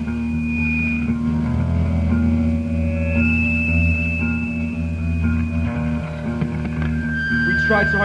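Band music from a demo recording: bass and guitar playing, with long held notes above a steady low end. A sung voice comes in near the end.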